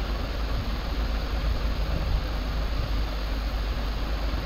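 Steady low hum with even hiss, the recording's background noise, with no distinct events.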